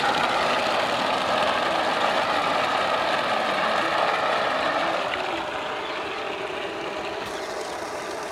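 Water gushing out of a pipe and splashing into a plastic tub, a steady rushing noise that eases slightly after about five seconds. It is the tub filling to dissolve fertilizer for drip fertigation.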